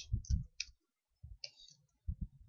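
Computer keyboard keys clicking: a few separate keystrokes near the start and a few more about one and a half seconds in.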